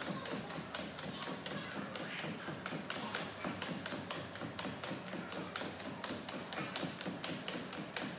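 Two jump ropes slapping a hardwood gym floor in a fast, steady run of sharp ticks, several a second, as the jumpers hop on one foot.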